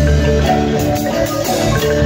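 Live marimba ensemble playing: several players sounding rolled, sustained notes on a wooden marimba, with electric bass guitar underneath.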